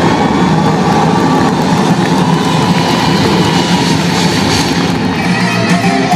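Symphonic rock band playing live at high volume in an arena, with electric guitar and violin. The sound is a dense wash in which individual notes are hard to pick out.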